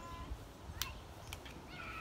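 A lull with a few faint clicks over low background noise. A high-pitched voice starts just before the end.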